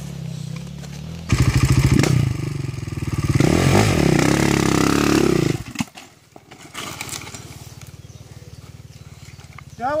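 Enduro dirt bike engine ticking over, then revved hard in bursts that rise and fall in pitch while the bike climbs a steep, slippery rock slope. About six seconds in it cuts back sharply to a quiet idle.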